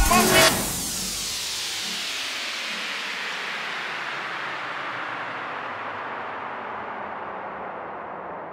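End of a dubstep track: the beat and bass stop about half a second in. A long hissing noise wash with a slow downward sweep is left, fading gradually.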